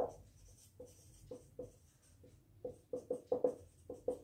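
Marker pen writing on a whiteboard: a faint run of short, irregular strokes that come closer together near the end.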